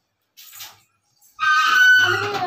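A person's loud, high-pitched vocal squeal starting about one and a half seconds in, after a short faint breathy sound.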